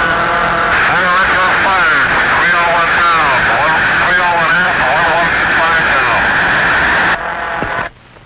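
Garbled voice transmission over a narrow, noisy radio link with steady hiss. The words are unintelligible, and it starts and cuts off abruptly.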